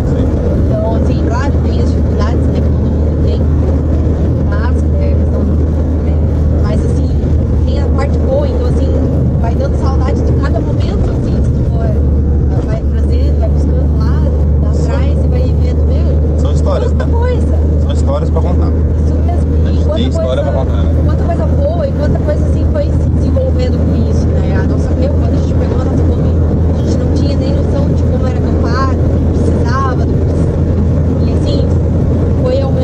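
Steady low rumble of a van's engine and tyres on the road, heard from inside the moving cabin, with voices talking over it.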